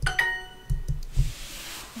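Duolingo's correct-answer chime: a short, bright ding right at the start that rings out over about a second, marking the answer as right. A few soft key taps follow in the middle.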